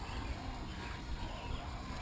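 Quiet outdoor ambience with a few faint bird chirps.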